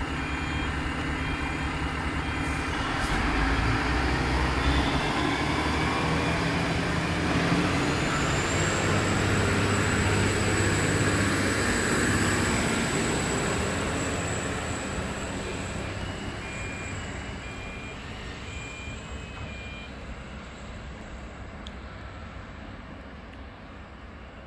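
NSW TrainLink Endeavour diesel railcar set pulling away from the platform. Its diesel engine builds as it accelerates past, then fades steadily as the train draws away down the line. A thin, steady high whine joins about eight seconds in.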